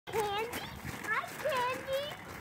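Young children's high-pitched voices giving about three drawn-out calls, with feet crunching on gravel underneath.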